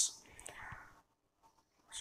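A pause in a man's speech: his voice trails off at the start, a faint short sound comes about half a second in, and then it is near silent until he speaks again.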